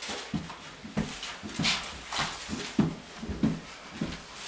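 Footsteps climbing carpeted stairs, a soft thud about two or three times a second, with a plastic shopping bag rustling now and then.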